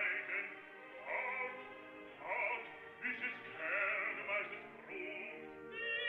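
Recorded operatic music: singing voices over instrumental accompaniment, in phrases. Near the end a sustained voice with wide vibrato comes in.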